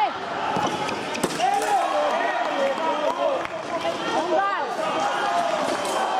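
Fencers' shoes squeaking sharply on the piste during a sabre exchange, with a single sharp click about a second in, over the chatter of a busy sports hall.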